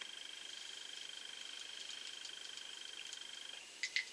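A steady, high-pitched rapid trill that stops suddenly about three and a half seconds in, followed by a couple of light clicks near the end.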